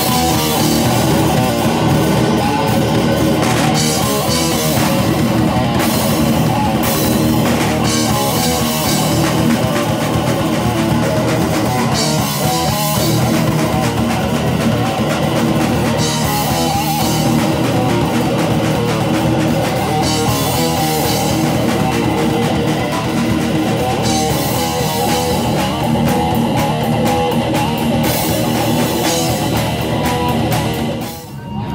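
Live hardcore band playing amplified: distorted electric guitars, bass guitar and a drum kit, loud and without a break.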